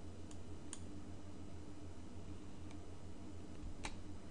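A few faint computer mouse-button clicks, the clearest one near the end, over a low steady electrical hum.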